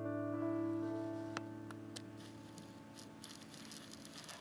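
A final piano chord held and slowly fading away at the end of the song. Two sharp clicks come in the first half, then light rustling as the chord dies out.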